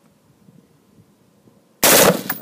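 Short burst of machine-gun fire, very loud and sudden, starting near the end after a quiet stretch.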